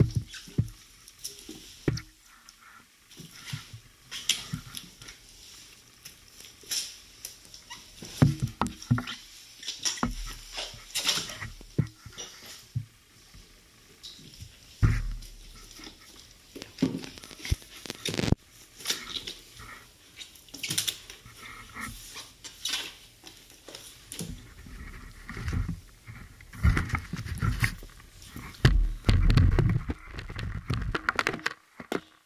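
Gunge-soaked trainers squelching and smacking in thick slime in a bathtub, in irregular wet slaps with occasional heavier thuds.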